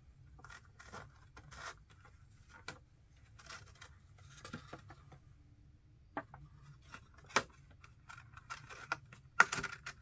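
A HeroClix booster's cardboard box and packaging being opened by hand: scattered tearing, scraping and crinkling, with a few sharp clicks, the loudest near the end.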